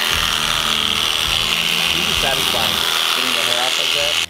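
Electric sheep shears running with a steady high buzz, their clipper blades shaving the hair off a deer hide.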